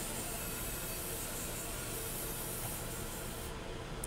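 Fiber laser marking hatched numbers into a metal plate: a steady hiss over a low machine hum. The hiss stops about three and a half seconds in.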